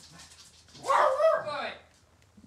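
A dog barks once, a loud call lasting under a second, about a second in.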